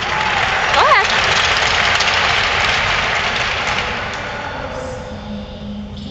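Crowd applauding in an arena, with a single voice whooping briefly about a second in; the applause dies away after about four and a half seconds.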